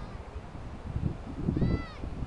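One short high-pitched cry near the end, rising then falling in pitch, over low rumbling of wind on the microphone.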